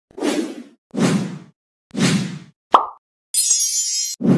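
Sound effects for an animated logo intro: three short noisy bursts about a second apart, then a sharp pop with a quickly falling tone, then a high fizzing hiss near the end.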